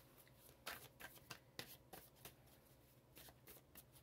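Tarot cards being shuffled and handled, a faint run of quick, irregular card snaps and flicks.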